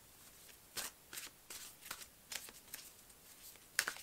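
A deck of tarot cards being shuffled by hand: a faint string of short, irregular card slaps and flicks.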